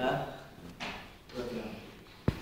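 Indistinct speech: short, quiet bits of a voice with pauses between them.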